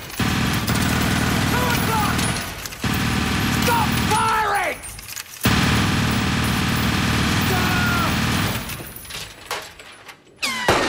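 Machine gun firing in long rapid bursts, three of them, the last stopping about a second and a half before the end, with men shouting over the fire.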